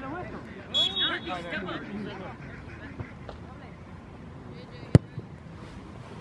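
A referee's whistle blows briefly about a second in. About five seconds in comes a single sharp thud of a soccer ball being kicked from a set piece, with spectators' voices at the start.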